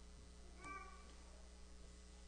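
Near silence: a steady low hum of room tone, broken a little over half a second in by one brief, faint squeak with a clear pitch.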